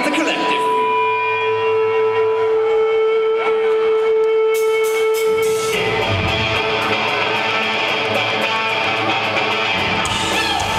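Rock band playing live, recorded from the audience: an electric guitar holds one long note for about five seconds. Then the full band with drums comes in, a little past halfway.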